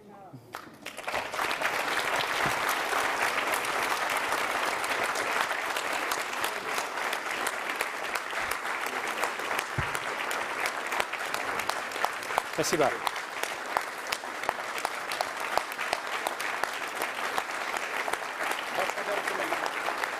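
Audience applauding: clapping starts about a second in and continues steadily.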